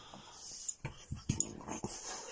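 Small dog noises from pet dogs, with a handful of short clicks and knocks in the second half.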